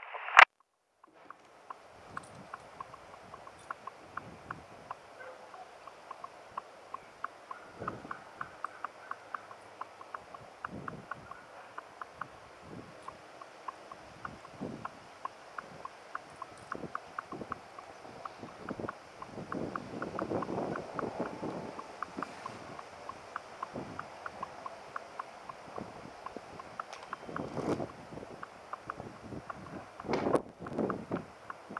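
Quiet outdoor background with many faint short clicks, a few soft low thumps and rustles of handling as the belt sword is worked free of the belt, and a single sharp knock just after the start.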